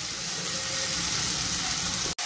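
Potato, pea and tomato sabzi sizzling steadily in a kadhai, with no stirring strokes.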